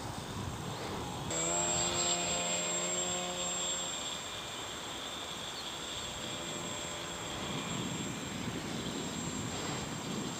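Foam radio-controlled model plane flying overhead, its motor and propeller heard as a pitched drone that is strongest for a few seconds and then fades, with a thin high steady whine over an airy hiss.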